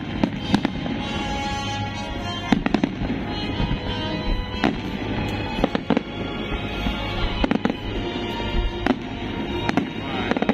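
Aerial firework shells bursting: sharp bangs at irregular intervals, several in quick clusters, over loud music playing.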